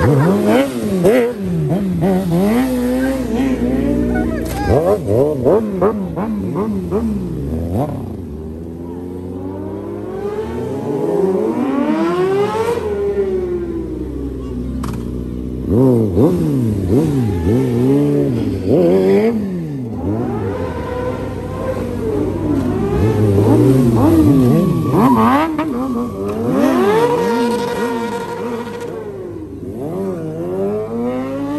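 Sport bike engine revved over and over, its pitch rising and falling in quick blips and longer pulls.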